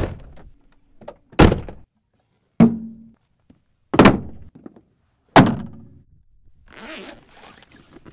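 Five heavy thunks about a second and a half apart, from a pickup truck and a hard rifle case being shut and handled. A short rustling slide follows near the end as a rifle is drawn from a soft case.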